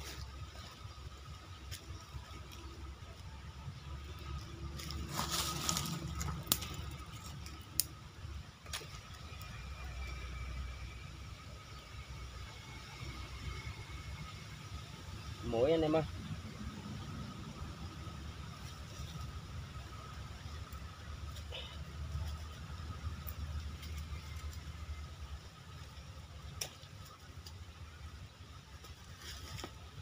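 Handling noises from a wire-mesh snake trap and a cloth bag: scattered clicks and rattles of the wire, with a louder rustling stretch about five seconds in, over a steady low rumble. A short vocal sound from the man comes about halfway through.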